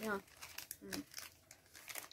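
Packaging crinkling in short, irregular rustles as it is handled and opened, with a brief spoken word or two between.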